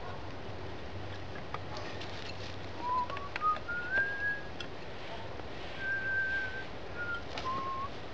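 A person whistling a short tune in clear notes. The notes step upward in pitch, one is held, and the tune then falls back down. Faint clicks of sticks and cord being handled sound underneath.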